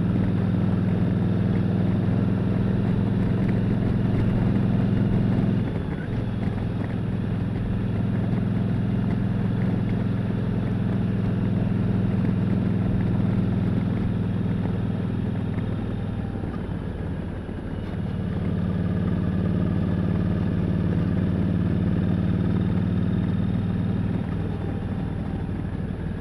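Motorcycle engine running at a steady road speed, picked up by a camera on the chin of a full-face helmet. The engine note dips briefly about six seconds in, then eases off again around seventeen seconds before picking back up.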